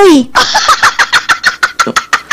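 A rapid, even run of pulses, about ten a second, like an engine cranking over, starting about half a second in; a falling voice is heard just before it.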